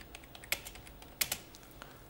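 Computer keyboard being typed on: a handful of light, irregular keystroke clicks as a short phrase is entered into a spreadsheet cell.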